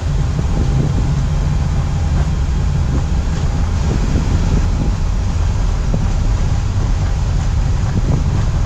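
Embraer E195-E2 on its takeoff roll, heard in the cockpit: the geared turbofans at takeoff thrust and the wheels rolling fast over the runway make a steady, loud, deep rumble with a hiss above it, as the jet accelerates toward 80 knots.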